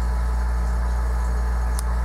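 Window air conditioner running with a steady low hum and a fan-like hiss, and one faint tick near the end.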